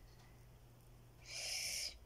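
Near silence, then about halfway through a short hiss of under a second: a sharp breath drawn in through the teeth at the sting of a peel-off mask pulling at the skin.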